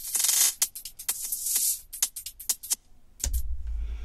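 Electronic tech house playback: closed hi-hats mangled by a FabFilter Saturn glitch-preset send, driven hard, heard as a sparse run of sharp ticks with two longer hissy smears in the first second and a half. A deep bass note comes in a little after three seconds in.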